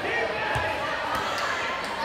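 Many young voices chattering in a gym, with a dull thud of a volleyball about half a second in.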